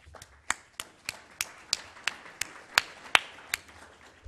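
Sparse hand clapping from a few people, one clapper's sharp claps about three a second over fainter clapping.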